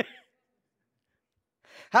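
A man's short laugh trailing off in a sighing breath, then silence, then a quick breath drawn in just before he speaks again.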